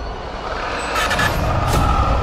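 Horror-trailer sound design: a low rumbling drone under a held high tone, with hissing swells about a second in.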